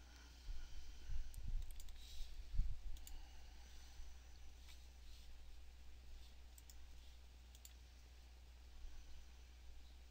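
Computer mouse clicking: about seven single, sharp clicks spread over the first eight seconds, with a few low thumps in the first three seconds, over a steady low electrical hum.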